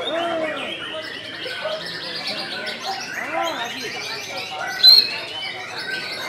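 Many caged songbirds singing and chirping over one another, with a loud high whistle just before the end.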